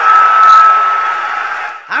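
Large crowd cheering and shouting, loudest about half a second in and fading away near the end, with a steady high tone running through it.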